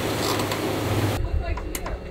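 Boat under way on engine power with a steady low rumble and, over it, a loud even rushing hiss that cuts off abruptly a little past one second, leaving the engine rumble and a few light clicks.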